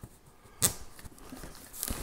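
Packing tape being torn open on a cardboard box: one sharp rip about half a second in, then small crackles and rustling of cardboard.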